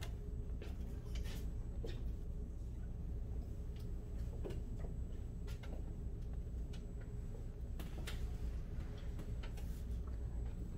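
Steady low room hum with scattered light clicks and taps.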